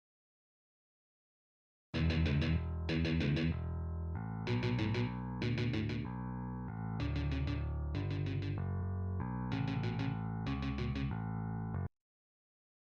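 Guitar Pro playback of a rock demo section: distorted rhythm guitar, bass and a drum pattern with snare and hi-hats in regular groups of hits. It starts about two seconds in and stops abruptly just before the end. The bass is the sparse, floaty part that the songwriter finds too disconnected from the guitar.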